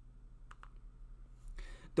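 Two quick, faint clicks of a computer mouse or key about half a second in, as the lecture slide is advanced to its next bullet, followed by a short breath in just before speech resumes.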